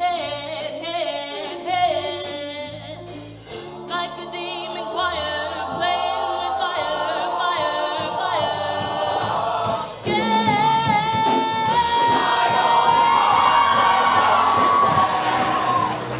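Show choir singing with instrumental backing over a beat. About ten seconds in, the ensemble gets louder and holds one long, high note to the end.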